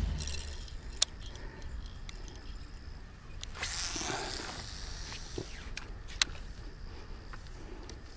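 Wind rumbling on the microphone outdoors on open water, with a faint hiss that swells for about a second and a half in the middle. Two sharp clicks stand out, one about a second in and one near six seconds.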